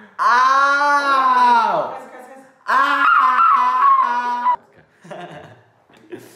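A person's loud, drawn-out laughing wails, two long cries of about two seconds each, the first rising and then falling in pitch, followed by softer laughter.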